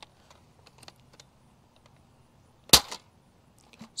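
Adventure Force Nexus Pro spring-plunger dart blaster fired with its barrel partly plugged to test the breech seal: one sharp snap about three quarters of the way through. A few faint handling clicks come before it.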